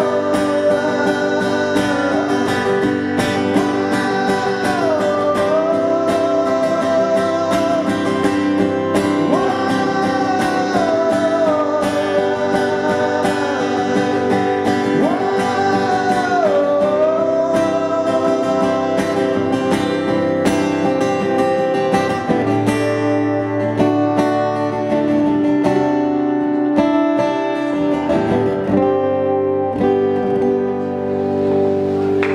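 Live band music led by strummed acoustic guitar, with a held lead melody line that slides slowly between notes over the first half. Past the middle the melody drops out and the music thins to guitar and a low bass line.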